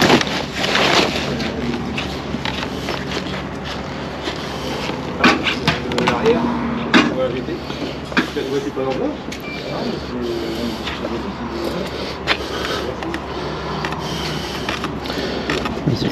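Handling noise from a handheld camera: rustling of clothing against the microphone and a few sharp knocks, with faint talking in the background.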